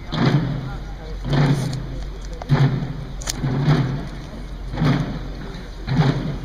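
Military procession drums playing a slow, steady funeral-march beat, about one deep stroke every second.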